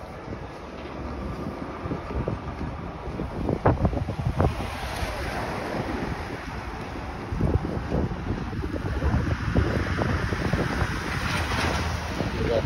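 Wind buffeting a phone's microphone outdoors, with road traffic; a hiss like a passing vehicle's tyres builds from about four or five seconds in.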